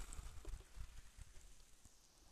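Faint shoreline ambience: calm sea washing softly on the beach, with a low rumble underneath.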